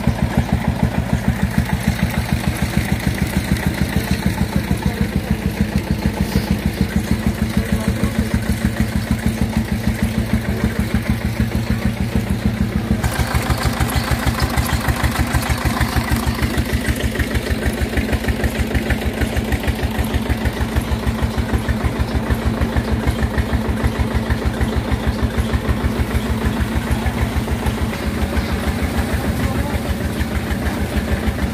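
Single-cylinder stationary engine running steadily with a rapid, even thumping beat, driving a sugarcane crusher through flat belts and pulleys. The sound turns harsher about halfway through.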